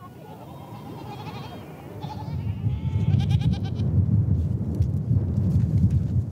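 Goats bleating in a herd, several wavering calls in the first few seconds. A low rumbling noise builds from about two seconds in and grows louder than the calls.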